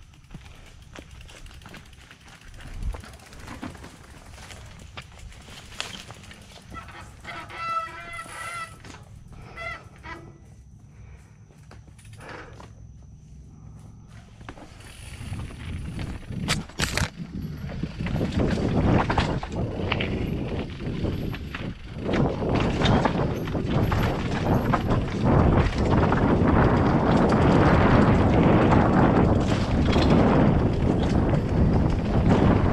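2017 Scott Gambler 720 downhill mountain bike riding over a rocky trail: a loud, clattering rush of tyres, chain and frame over rock that builds from about halfway through and stays loud. Earlier, while it is quieter, there is a brief honk-like squeal.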